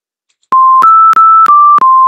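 Web:Bit simulator's buzzer playing a melody of pure electronic tones, starting about half a second in, about five notes of a third of a second each, each note beginning with a click. The tune is a note-block arrangement of the Bunun song used as the high-speed rail's arrival chime.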